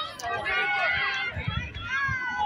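Several people's voices talking over one another, high-pitched, with no one voice clear.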